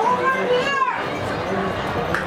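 A child's high-pitched voice calls out once in the first second, its pitch rising and then falling, over a steady background of crowd chatter.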